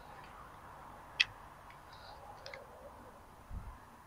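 Faint clicks of plastic plumbing fittings being handled: one sharp click about a second in, a few lighter ones after, and a short low thump near the end.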